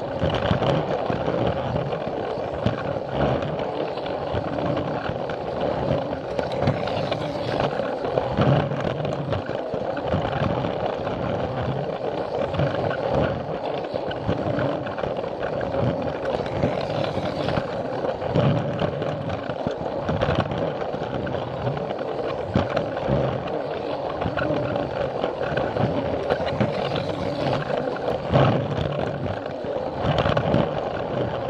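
Plarail toy train's small battery motor and gearbox whirring steadily close to the microphone as it runs along plastic track, with a rough rattle from the wheels and occasional louder clatters.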